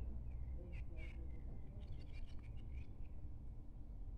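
Volvo B10BLE city bus's rear-mounted six-cylinder diesel engine idling while the bus stands still, heard from inside the cabin as a steady low rumble. A few faint high chirps and clicks come in over it during the first two seconds.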